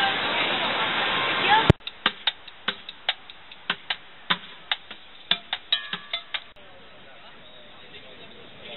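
Loud steady rushing noise that cuts off abruptly about two seconds in. Then comes a run of sharp clicks or taps, about four a second, which stop about a second and a half before the end.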